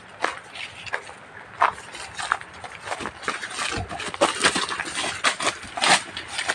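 Footsteps crunching through dry leaf litter and twigs on a forest path: irregular crisp steps, several a second.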